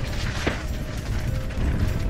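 Mountain bike descending a rough gravel and rock trail at speed, heard from a helmet camera: tyres crunching over the gravel and the bike rattling over the rough ground, with a continuous low rumble.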